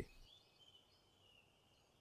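Near silence, with a faint high chirping in the first second or so.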